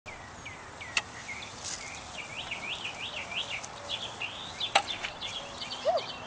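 Songbirds chirping and singing, a run of quick rising-and-falling notes repeated several times a second, over a steady outdoor hiss. Two sharp knocks cut through, one about a second in and a louder one near the end.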